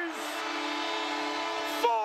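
Arena goal horn sounding one steady, held blast over a cheering crowd, signalling a home-team goal. It cuts in just after the start and is still sounding under the announcer's voice near the end.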